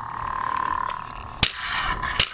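Hasbro BladeBuilders Path of the Force toy lightsaber humming steadily from its small speaker in its dark-side (Sith) sound font. A single sharp hit sounds about one and a half seconds in.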